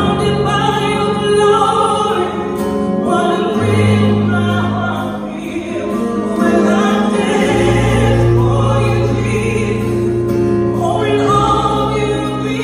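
Live gospel-style worship song: a woman and a man singing into microphones over a band, with long held low notes underneath that change every few seconds.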